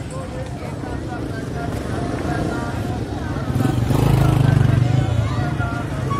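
Background chatter of many voices on a busy market street, with a motor vehicle engine passing close by and loudest about four to five seconds in.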